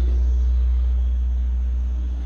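A steady low rumble with faint background noise, from the recording of the seized gear.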